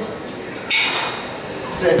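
Metal weight plates clinking: one sharp clink about two-thirds of a second in, with a short ringing after it.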